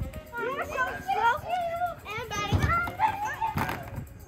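Boys shouting and yelling wordlessly as they run about playing, with a sharp thump about two and a half seconds in and another near the end.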